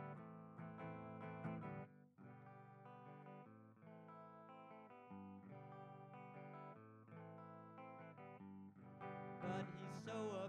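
Hollow-body electric guitar played alone, soft picked chords that ring and change every second or so. It drops away briefly about two seconds in, stays quieter, and grows louder again near the end.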